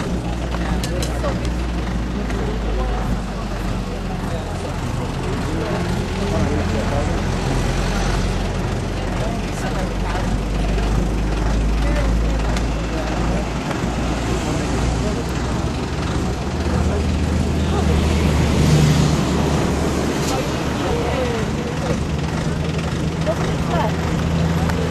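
A vehicle engine idling with a steady low hum, with faint talking in the background.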